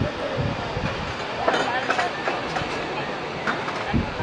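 Steady rushing noise of the waterfalls falling into the gorge, with people's voices heard briefly about halfway through.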